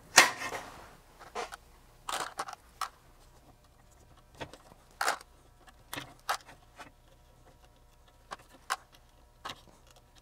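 Scattered light clicks and taps of hand work on a metal test-equipment plug-in: a precision screwdriver loosening the set screws of the front-panel knobs, with a sharper knock right at the start.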